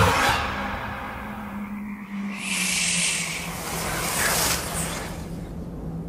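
Horror trailer score: a low, steady sustained drone, with a brief rushing swell of noise about two and a half seconds in.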